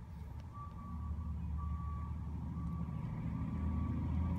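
Heavy truck engine running with a steady low rumble that grows louder, with a high tone over it that comes and goes.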